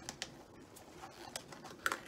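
A few light clicks and taps of plastic paint cups and bottles being handled, about five in two seconds, the loudest near the end.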